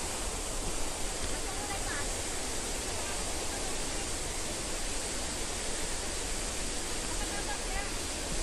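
Steady rushing of flowing water, an even hiss that holds without breaks, from the stream or waterfall in the forest below.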